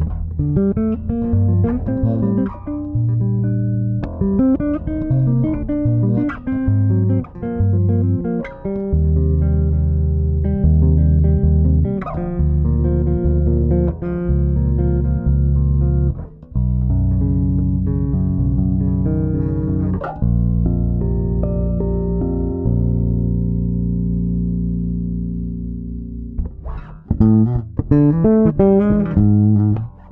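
Pedulla Rapture five-string electric bass played fingerstyle, solo: a run of plucked notes, then long held low notes that slowly fade out, then a quick, busy passage near the end.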